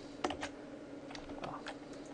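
Scattered light clicks of a computer keyboard and mouse, a handful of separate taps, over a faint steady hum.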